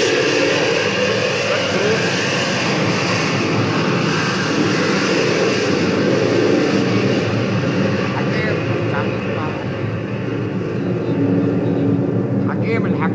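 Airplane flying over: a loud, steady roar that drowns out everything, easing slightly about ten seconds in.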